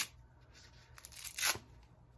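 Hook-and-loop strap on a removable thumb cast being peeled open, a short ripping sound about a second and a half in, with a fainter rip just before it.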